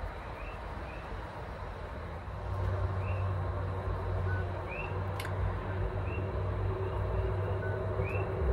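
Road traffic: a low vehicle rumble that swells about two and a half seconds in and stays up, with short high chirps repeating every second or so over it and a single click midway.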